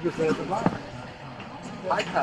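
Background chatter of people's voices, with a single sharp knock about two-thirds of a second in.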